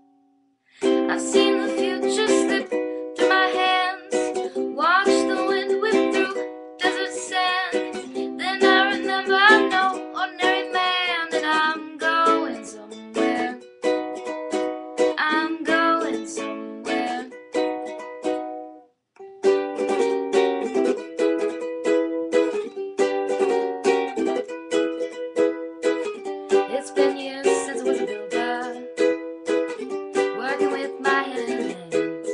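Ukulele playing an instrumental passage of picked and strummed chords, stopping briefly about two-thirds of the way through before carrying on.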